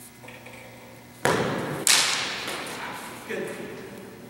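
Two sharp strikes about half a second apart, practice broadswords clashing in an exchange, each ringing out and fading slowly in the echoing gym hall.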